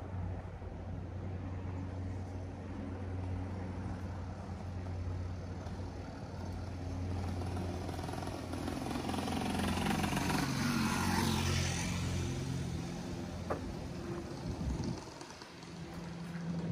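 Motor traffic: a steady low engine hum, with a vehicle passing louder about ten seconds in. The hum falls away near the end, and there is a single sharp click shortly before.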